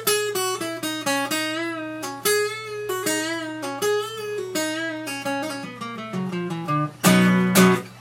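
Acoustic guitar played as a single-note lead in an A-shaped B chord position: picked notes with string bends that push the pitch up and let it back down, then a descending run of notes, ending in two loud strummed chords about seven seconds in.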